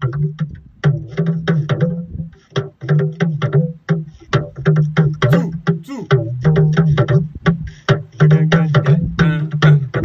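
Talking drums struck with curved sticks in a quick, continuous rhythm of sharp strokes, some strokes sliding in pitch as the drum's tension cords are squeezed.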